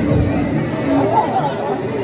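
Voices chattering, with no clear words.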